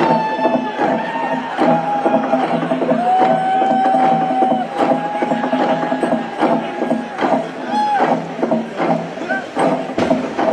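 Konyak log drum being beaten in repeated knocks, under long chanted notes from the performers' voices, each held for a second or two, with a short rising call near the end.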